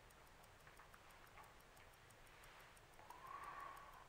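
Near silence: room tone with faint, sparse ticking, and a faint soft sound rising slightly near the end.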